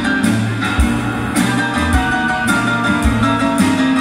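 Live band playing an instrumental passage with no vocals: guitar and keyboards over a low bass line, with a steady drum beat.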